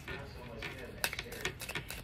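A tarot deck shuffled by hand, overhand: a run of light, sharp card clicks and flicks starting about a second in.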